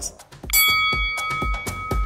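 A bell-like chime rings out about half a second in and fades slowly, the workout timer's signal to start the exercise interval, over background music with a steady kick-drum beat about twice a second.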